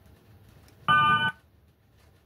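A short electronic tone, a chord of several steady pitches, sounding once about a second in for under half a second and cutting off suddenly.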